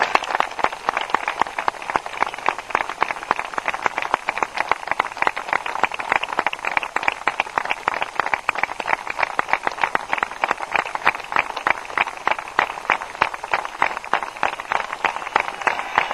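Applause from a group of spectators, many separate hand claps close together.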